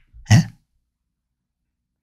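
A man's single short vocal sound, a quick throat-clear-like "ye?", about a third of a second in, then dead silence for the rest.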